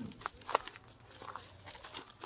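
Faint footsteps on dry straw-covered ground, with low crunching and rustling and two short clicks in the first second.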